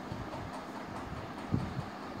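Steady low background noise, a faint hiss and rumble with no clear source, with a soft low thump about one and a half seconds in.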